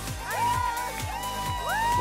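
Background music with a steady low beat and drawn-out notes that slide up and then hold.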